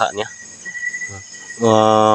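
Crickets chirring steadily, with a man's long held "hmm" starting about a second and a half in, louder than the insects.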